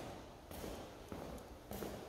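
A few soft footsteps on a bare concrete garage floor.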